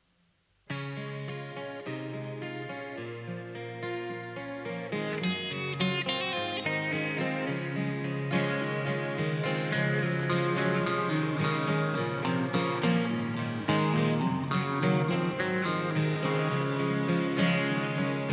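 Instrumental intro of a country song played by a live band: strummed acoustic guitar with electric guitar and bass guitar. It starts abruptly just under a second in and grows fuller from about five seconds in.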